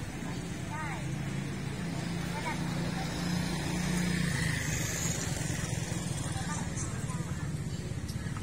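Street ambience: a motor vehicle engine hums low and steady, growing louder around the middle, with people's chatter in the background.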